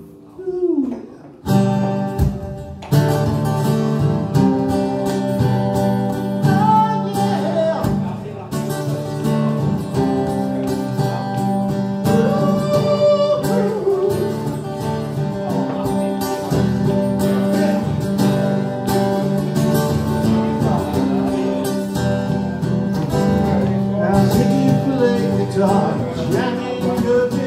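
Live rock song on electric guitar with a man singing, the full playing coming in about a second and a half in.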